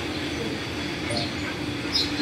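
Steady background noise with a low, even hum.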